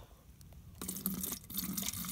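Muddy runoff water being poured from a collapsible fabric bowl into an empty plastic water bottle, the stream starting a little under a second in and splashing as it fills the bottle.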